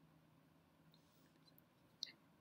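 Near silence: faint room tone, with two very faint ticks.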